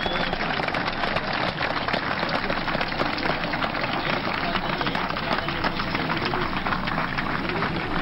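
A crowd applauding steadily, a dense patter of many hands clapping, with faint voices underneath.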